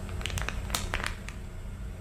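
Thin plastic water bottle crinkling in a cluster of short crackles during the first second or so, as it is drunk from, over a low steady hum.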